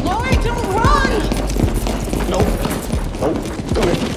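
Quick footsteps and thuds of people running across a hard floor, with a raised voice calling out in the first second, ending in a short scuffle.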